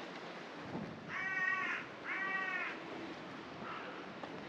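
A bird calling: two loud, harsh cawing calls, each about two-thirds of a second long and a second apart, then a fainter third call near the end.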